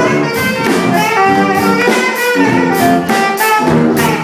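Live brass band playing a tune: saxophones, trumpets, trombone and sousaphone in harmony over a steady beat.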